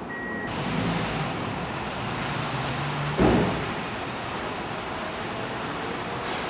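Car driving through a parking garage: a steady rush of engine and road noise with a low hum under it. A short high beep comes at the very start, and a single loud thump about halfway through.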